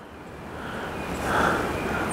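Floodwater swishing around hip waders as a person wades, a rushing noise that swells over the two seconds.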